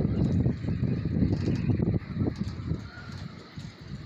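Gusty wind buffeting the microphone, a rough low rumble that eases about two seconds in.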